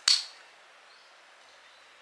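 A single sharp plastic snap as the twist-open lid of a mini Huda Beauty Easy Bake loose-powder pot pops up to reveal its puff applicator, loud and sudden with a brief ring, followed by faint room hiss.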